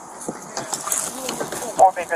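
Indistinct voices talking, louder near the end, with a few light clicks and knocks in the first second or so.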